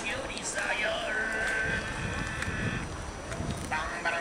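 People's voices in conversation; about a second in, one voice is drawn out in a long, high, even tone for under a second.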